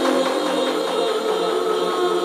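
Psytrance track in a stripped-back passage: sustained synth tones with light, even percussion ticks and no kick drum or bass.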